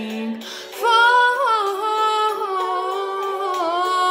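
A woman singing unaccompanied. A held low note ends, there is a brief pause for breath, and about a second in she starts a loud new phrase of sliding, ornamented notes.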